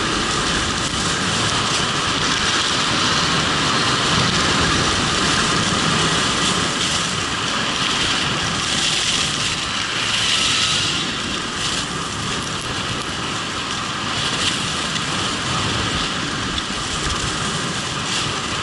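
Steady rushing of wind over a helmet-mounted camera's microphone during a fast ski descent, mixed with skis sliding and scraping on packed snow. It eases a little about two-thirds of the way through.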